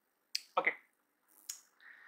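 Two short sharp clicks about a second apart, the first just before a spoken "okay" and the second fainter.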